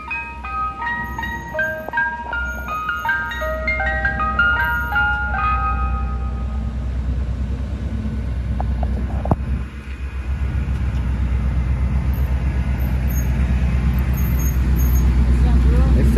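Ice cream truck playing its chime jingle, a stepping tune of bell-like notes, for about the first six seconds. After that only the truck's engine is heard, a low rumble that grows louder as the truck pulls up close.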